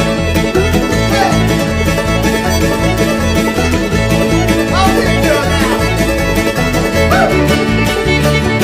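Old-time string band playing an instrumental passage of a fiddle tune: fiddle and banjo carry the melody over upright bass and guitar, at a brisk, steady pace.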